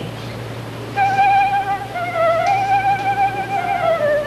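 Concert flute playing long held notes with vibrato, starting about a second in. The pitch steps down briefly and comes back up, then settles a little lower near the end.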